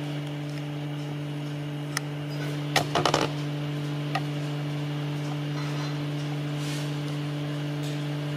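A few metal clinks and knocks, with a short clatter about three seconds in, from the hardware being handled as a sewing machine head is bolted to its table, over a steady low hum.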